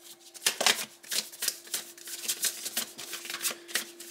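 A deck of tarot cards being shuffled by hand: a run of quick, irregular card clicks and slaps, several a second.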